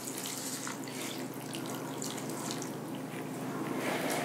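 Chicken broth pouring in a steady stream from a glass measuring cup onto uncooked rice, salsa and beans in a cast iron skillet, splashing and trickling.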